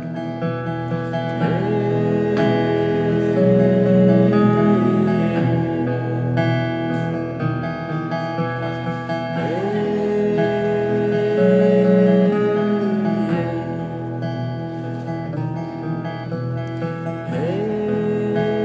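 Live acoustic guitar music: a picked guitar pattern runs under a melody line that slides up into a long held note three times, about every eight seconds.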